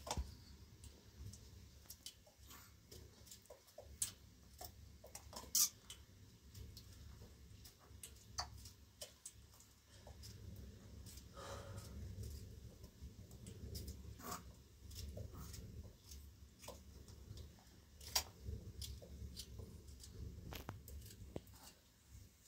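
Small knife clicks and taps as tomatoes are cut by hand over a steel bowl: scattered, irregular ticks.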